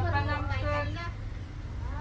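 People talking for about the first second, with another voice starting near the end, over a steady low rumble.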